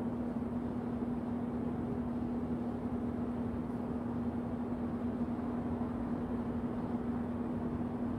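Steady background hum with a constant low tone and an even noise underneath, unchanging throughout.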